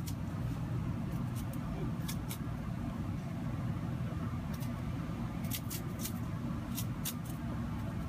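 A steady low mechanical hum, like a running engine, with scattered short sharp clicks.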